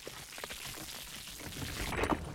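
Sound effect of glacier ice cracking: a continuous crackling rush as a crack spreads through the ice, growing louder toward the end.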